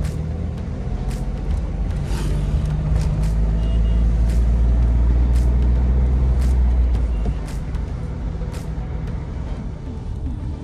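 Car cabin noise while driving: engine and tyre rumble, louder in the middle stretch, with music playing that has a light, regular beat.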